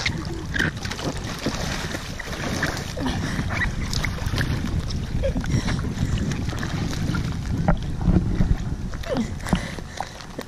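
Lake water lapping and sloshing against a waterproof action camera at the waterline beside a floating foam mat, with a steady low wind rumble on the microphone and scattered small splashes and knocks.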